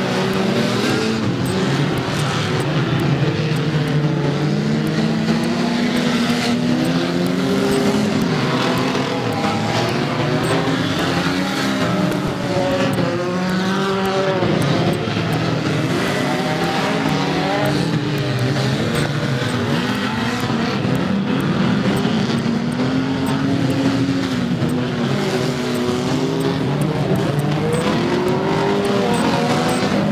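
Several Ford Granada banger racing cars' engines revving as they race, the pitch repeatedly climbing and dropping as the cars accelerate and lift off, with more than one engine heard at once.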